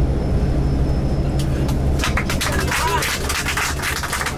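Steady low drone of a tour bus's engine heard inside the cabin. From about halfway a dense crackling rustle joins in.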